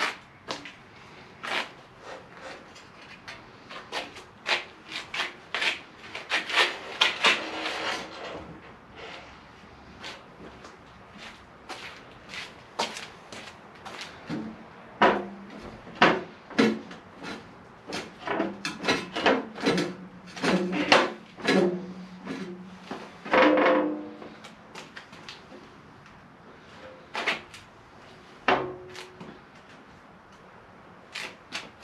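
Aluminum diamond plate sheet being handled and worked on a steel stand: irregular knocks and clanks, in quick clusters, with the sheet ringing briefly after some strikes.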